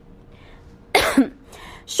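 A single short, sharp cough about a second in, a person clearing their chest during a pause in speech.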